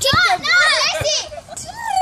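Young girls shouting, squealing and laughing as they play, with a couple of low thumps, one near the start and one about a second in.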